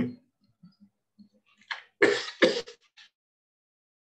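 A person clearing their throat: two short, rough bursts in quick succession about two seconds in.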